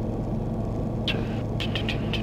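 Steady drone of a Tecna P92 light-sport airplane's engine and propeller in level flight, heard from inside the cockpit.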